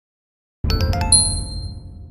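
A channel's intro sound logo: a quick run of bell-like dings over a low rumble, starting about half a second in, with the high notes ringing out and fading.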